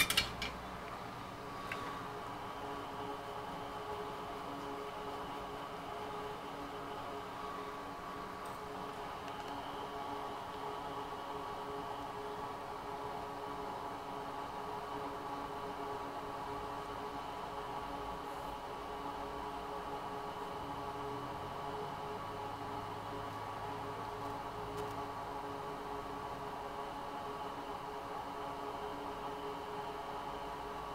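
Steady hum of a fan running in electronics-rework bench equipment, made of several held tones that barely change. A couple of faint clicks right at the start.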